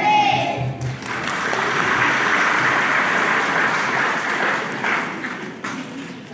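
Audience applause: the children's choir's last sung note dies away in the first second, then clapping rises and holds steady before fading out near the end.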